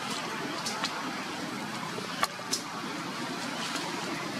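Steady outdoor background noise, with a single sharp click a little over two seconds in and a few short high chirps around it.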